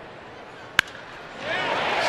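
A wooden baseball bat cracks once, sharply, against a pitched ball about a second in. The ballpark crowd noise swells near the end as the hit goes into the gap.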